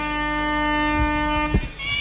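The sralai, the Khmer reed oboe of the ring's boxing music, holds one long reedy note that breaks off shortly before the end, over a couple of low drum beats.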